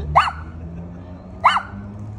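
A small white fluffy dog barking twice, two short sharp barks about a second and a quarter apart.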